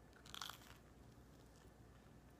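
A single crunchy bite into a slice of toast about half a second in, followed by faint chewing.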